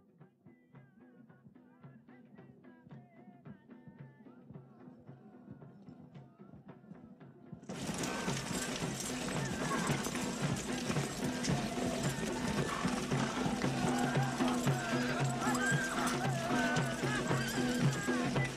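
Horse hooves in a regular beat, faint at first and slowly growing louder. About eight seconds in, music and a much louder din of horses, with hooves and neighing, come in suddenly.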